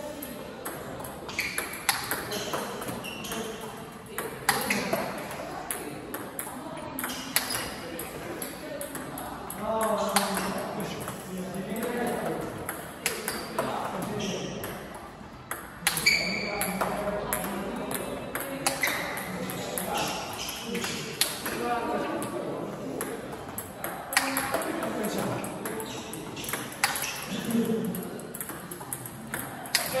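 Table tennis balls clicking off rubber paddles and the table in a steady series of sharp hits, as a feeder serves backspin balls one after another and a player answers each with a forehand. Voices talk in the background.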